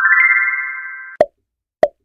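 Quiz sound effects: a chime, a quick rising run of bright bell-like notes that rings on and stops suddenly about a second in, marking the end of the countdown. Then come two short pops.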